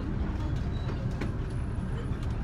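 Tour bus engine running, a steady low rumble heard from inside the cabin, with a few faint ticks.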